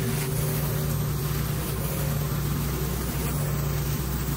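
Commercial pressure washer running steadily, its engine humming under the hiss of a rotary surface cleaner spraying water onto a concrete driveway.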